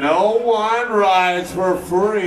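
A man's voice through a venue PA, calling out long, drawn-out words into the microphone.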